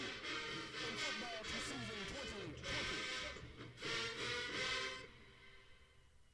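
Marching band brass section playing: trumpets, horns and sousaphones together. The music stops about five seconds in.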